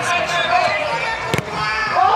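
A single sharp thud about one and a half seconds in: a football struck hard with the foot in a penalty kick, heard over voices.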